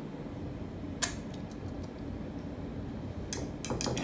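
A wire whisk clinking against a ceramic bowl: one sharp clink about a second in and a quick run of clinks near the end, over a steady low room hum.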